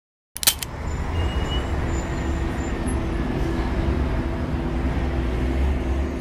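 Steady low rumble with a faint hum, like distant traffic noise, that starts abruptly with a click just after the start.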